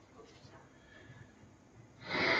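Near silence: room tone in a pause of a lecture.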